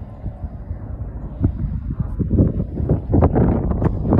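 Wind buffeting a phone microphone outdoors, an uneven low rumble. From about two seconds in it is joined by a quick run of short rustling knocks.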